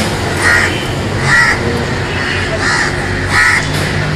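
Crows cawing: four short calls roughly a second apart, over a steady low rumble.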